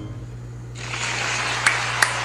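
A concert audience's applause breaking out about a second in, as the song's final note dies away, with a few sharper single claps near the end.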